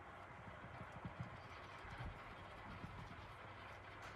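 Faint, irregular soft taps and rubs of a magic eraser pad dabbing and blending alcohol ink on a painted tumbler.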